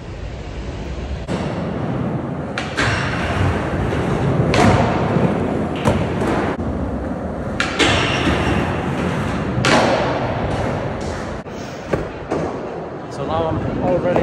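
Skateboard wheels rolling and grinding on concrete and a ledge, with repeated sharp pops and clacks of the board striking the ledge and landing, echoing in a large hall.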